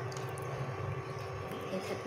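Braising pork and duck eggs in coconut water simmering in a metal pot: faint scattered bubbling over a low steady hum.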